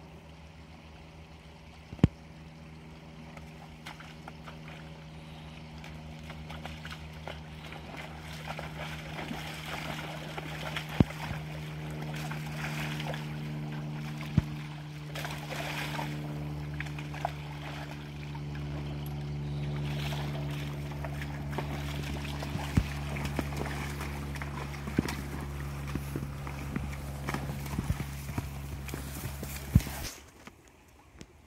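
Hooves of a grey riding horse and a young ponied Andalusian, stepping on the stony path and then wading and splashing through a shallow creek, with a few sharp knocks scattered through. A steady low hum runs underneath and grows louder over the first half.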